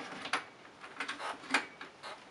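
A PSO scope's side mount being worked onto an AK-74's side rail by hand: a handful of sharp clicks and scrapes, the loudest about one and a half seconds in. The mount is not seating easily.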